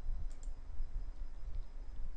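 A couple of soft computer-mouse clicks about a third of a second in, over a steady low hum.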